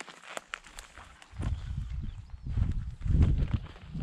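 Footsteps through weeds and gravel across overgrown rail tracks, with scattered light crunches. Two stretches of low rumbling come about one and a half and three seconds in.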